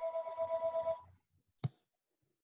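Telephone ringing: a rapidly pulsing electronic ring tone for about a second, then a single click.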